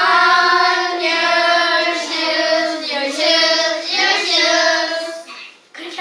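A group of children singing together in unison, holding long notes; the singing fades out about five seconds in.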